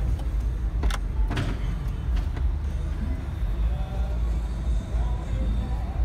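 A Ram Power Wagon's 6.4-litre V8 idling, a steady low rumble heard from inside the cab. A single sharp click comes about a second in.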